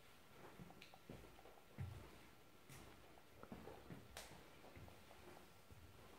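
Near silence: quiet indoor room tone with a few faint scattered knocks and rustles.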